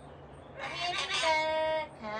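A parrot calling: one drawn-out call that starts about half a second in, rises briefly in pitch and then holds steady for over a second.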